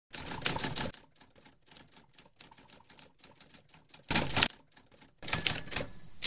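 Typewriter sound effect: a loud clatter, then a run of faint rapid key clicks, a second loud clatter about four seconds in, and near the end more clatter with a high ringing tone like a carriage bell.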